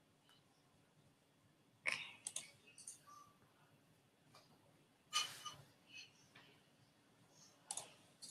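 Faint, scattered clicks and taps from someone working a computer keyboard and mouse, coming in small bunches about two, five and eight seconds in.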